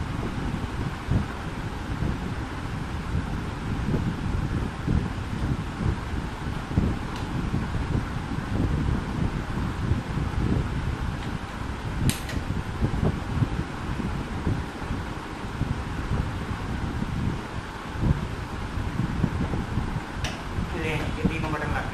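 Steady fan-like air noise with an uneven low rumble, and a single short click about twelve seconds in.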